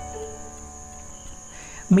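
Soft background music with several steady held notes, over a constant high-pitched whine; a voice comes back in just at the end.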